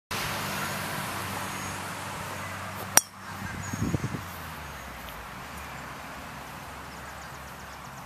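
A golf driver striking a ball: one sharp click about three seconds in, the loudest sound, followed by a few low thumps. A steady low hum runs underneath.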